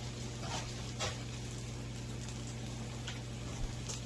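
Faint steady sizzle of buttered bread frying in a nonstick pan over a low steady hum, with a few soft clicks of bread and cheese being handled, the last near the end.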